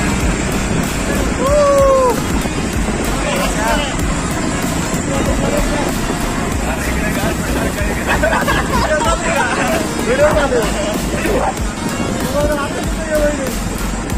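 Riders on moving motorcycles calling out and whooping in short bursts over steady wind rush and engine noise.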